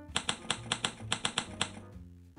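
A quick, even run of typewriter key clicks, about six a second, stopping shortly before the end, over soft background music.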